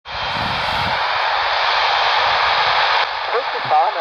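Handheld airband receiver's speaker hissing with steady radio static. About three seconds in the hiss drops and the recorded VOLMET weather-broadcast voice begins through the speaker.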